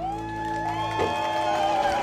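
A live band's final chord rings out and stops about a second in, while the audience whoops and cheers at the end of the song.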